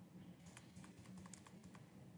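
Faint computer keyboard keystrokes: a quick run of about a dozen light clicks, as on-screen text is deleted and retyped.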